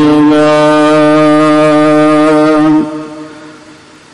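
Gurbani kirtan: a single steady held note, in the manner of a harmonium, sounds for nearly three seconds and then fades away.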